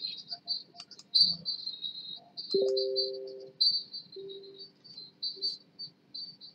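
High-pitched insect chirping, like crickets, going on and off throughout, with a couple of faint clicks early and a short, steady low tone about two and a half seconds in.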